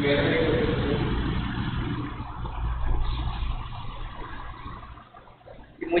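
Low rumbling noise that swells and then fades away over about five seconds.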